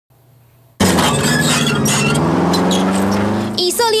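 A tracked armoured vehicle running hard: loud engine and track noise cut in suddenly under a second in, with the engine pitch slowly rising. A man's voice starts speaking near the end.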